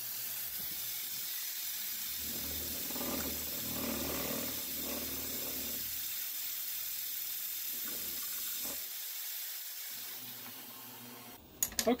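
Milling machine drilling a 5/16-inch hole in mild steel plate under the steady hiss of an air-blast mist coolant nozzle, the cutting noise strongest a few seconds in. The hiss tapers off and stops shortly before the end.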